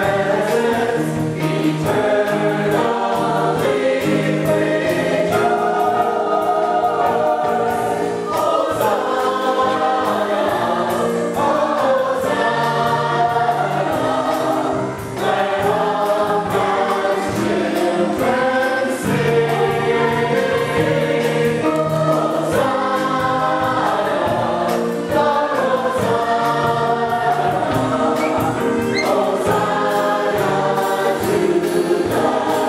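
Church choir of adults and children singing a hymn together in sustained phrases, with a short break between phrases about halfway through.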